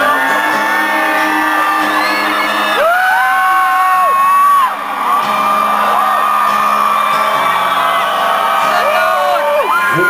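Live unplugged rock ballad: an acoustic guitar accompanying a female and a male voice singing held notes, with audience members whooping and yelling close to the recorder.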